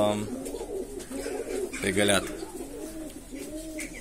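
Indian fantail pigeons cooing: a string of low, rising-and-falling coos.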